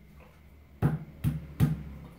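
Three sharp knocks on a grey PVC water pipe as hands tap it into its fitting on the wall, each knock with a short hollow ring.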